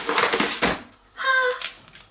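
Brown kraft-paper grocery bag and a foil sachet being handled, a dry crinkling rustle that ends in a sharp crackle just under a second in.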